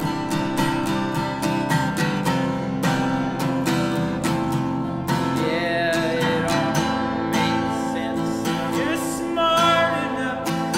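Acoustic guitar strummed in a steady rhythm. From about halfway, a high voice sings long, bending notes over it.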